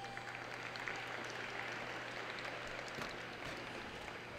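Applause from a small crowd, starting just after the routine ends, fullest in the middle, and thinning out near the end.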